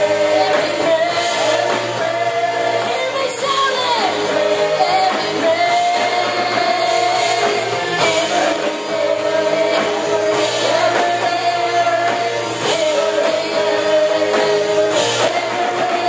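A church worship team of several singers singing a worship song together through microphones, with music behind them, in long held notes.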